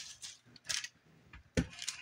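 Kitchen knife cutting pineapple on a paper-lined metal cookie sheet: a few short, separate clicks and taps.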